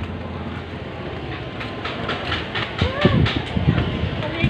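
Busy market background noise: a steady rumble with a run of clattering knocks, and a voice calling out about three seconds in.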